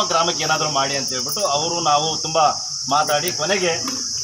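A man speaking into a microphone, with a steady high-pitched hiss behind his voice throughout.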